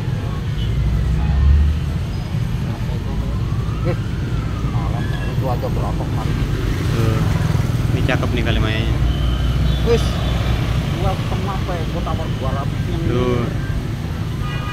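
Steady low rumble of street traffic. A high tone rises and falls slowly in pitch twice in the first five seconds, and people talk in the background in the second half.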